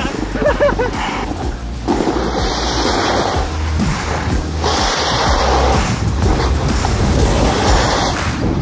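Snowboard riding down a slope with wind rushing over the camera microphone, starting about two seconds in: a loud, steady rush with a low rumble.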